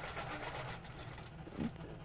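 Handi Quilter longarm quilting machine stitching steadily along an acrylic arc ruler, a fast, even run of needle strokes.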